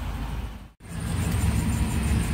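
Mitsubishi Colt 1.3 petrol engine idling, heard from inside the cabin as a steady low rumble. The sound cuts out abruptly a little under a second in and comes back with the same rumble.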